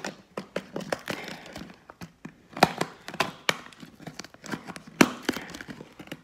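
Thin plastic water bottle being handled, crackling and giving off irregular sharp taps and clicks, a few louder ones near the middle and end.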